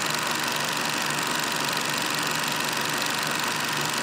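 Old film projector sound effect: the projector running with a steady, rapid mechanical clatter over a bed of hiss.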